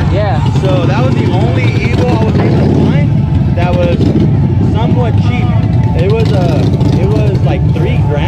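People talking over a steady low engine rumble.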